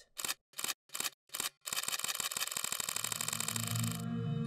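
Camera shutter sound effects: four separate shutter clicks in the first second and a half, then a fast continuous burst of shutter clicks, about a dozen a second. A low rumble comes in under the burst in the last second.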